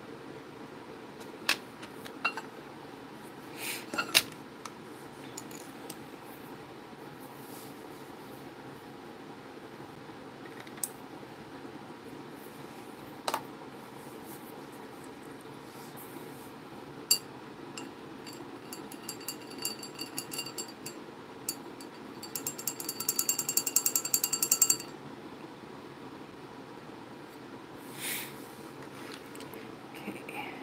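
Art tools and supplies handled on a tabletop: scattered light clicks and knocks, then a quick rattling run of ringing clicks lasting about three seconds, about two-thirds of the way through, over a steady background hiss.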